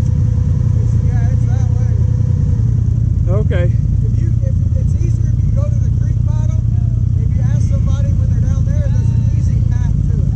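ATV engine idling steadily, a constant low drone, with people talking over it.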